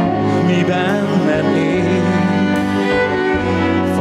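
A live band plays a slow musical-theatre ballad passage, led by bowed strings (violins and cello) holding sustained notes over keyboard and bass.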